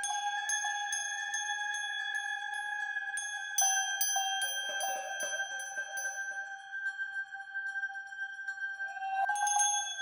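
Crotales struck one note after another, their high bell-like tones ringing on over a steady sustained tone from the piece's recorded digital audio part. A louder group of strikes comes in about three and a half seconds in, and a quick flurry near the end.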